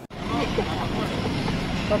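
Steady outdoor street noise with a vehicle rumble and voices in the background. A man starts speaking near the end.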